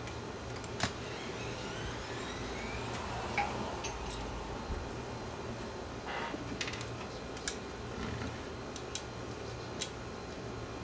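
Scattered light clicks and taps of a small screwdriver and metal parts being handled on a cassette deck's tape transport, with a short scraping moment around six seconds in, over a steady low hum.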